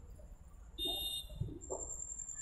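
Faint street background noise with a brief high ringing tone lasting about half a second, a little under a second in.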